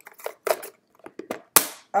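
A capped syringe going into a plastic sharps container: a run of small plastic clicks and rattles, then one loud sharp clack about one and a half seconds in.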